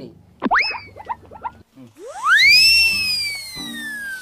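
Cartoon-style comedy sound effect: a quick whistle-like swoop up and down about half a second in, then a long, loud swoop that shoots up near two seconds in and slowly slides back down, over low background music.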